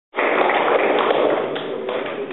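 Audience applauding, loudest as it cuts in and easing off after about a second and a half.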